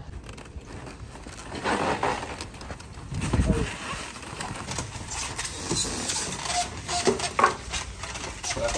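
Muffled voices and outdoor background noise, with a dull low thump about three and a half seconds in and scattered light knocks.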